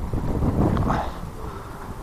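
Wind buffeting the microphone: a steady low rumble with no clear voice. The rumble eases a little in the second half.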